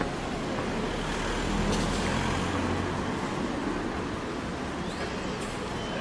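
Street traffic noise: a steady hum of passing road vehicles, with one vehicle's low rumble swelling and fading in the first half.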